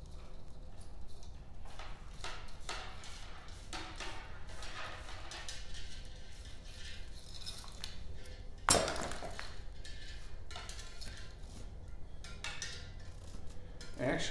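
Irregular small clicks and scrapes of insulated wire being handled and pushed up through a metal tube on a riding mower, with one sharp knock a little under nine seconds in.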